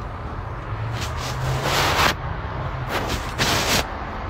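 Two long, breathy rushes of air from a man smoking a blunt, about a second in and again near the end: drawing on the blunt and blowing out the smoke. A low steady hum runs underneath.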